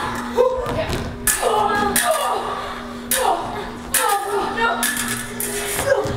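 Shouts and grunts of a staged sword fight, broken by repeated sharp knocks and thuds as the fighters strike and stamp on the wooden stage, with a steady low hum underneath.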